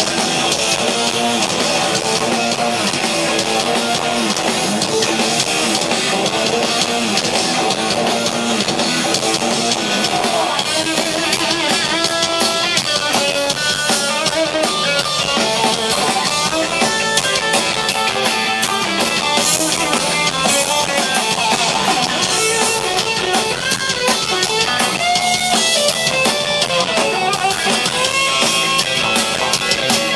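Live rock band playing loudly, with electric guitar over drum kit and bass, recorded from the crowd. A clearer melodic line stands out above the band from about ten seconds in.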